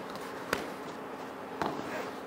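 A single sharp knock about half a second in and a softer knock near the end, from a man exercising on foam floor mats, over faint hall background.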